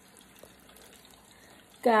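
Faint, steady sizzling of fries deep-frying in hot oil in an electric deep fryer, with a few tiny crackles.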